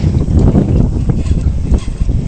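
Wind buffeting the microphone: a loud, uneven low rumble with a fainter hiss above it.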